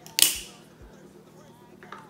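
A single sharp knock of coffee-making gear against the stone countertop about a quarter second in, fading quickly, then a light click near the end as the AeroPress plunger is handled.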